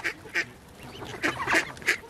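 Mallard ducks feeding at close range, giving several short quacking calls.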